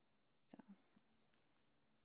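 Near silence: room tone, broken only by one softly spoken word about half a second in.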